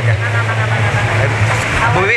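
A steady low engine hum runs under background voices, changing near the end.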